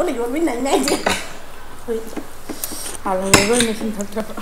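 Tableware clinking at a meal: glass water mugs and plates knocking on a glass tabletop, a few sharp clinks about a second in and again after three seconds, amid women's voices.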